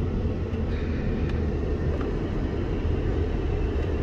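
Steady low rumble of a car driving along a city street, heard from inside the cabin.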